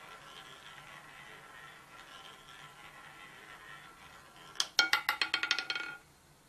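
Roulette ball dropping off the track and clattering across the deflectors and pocket frets of a spinning roulette wheel: a rapid run of sharp clicks lasting about a second and a half near the end, after a faint steady hum.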